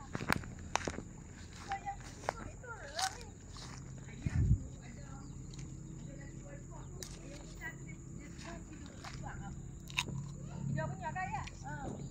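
Quiet outdoor ambience of someone walking with a handheld phone: soft footsteps and scattered handling clicks, a dull thump about four seconds in, and faint distant voices near the end.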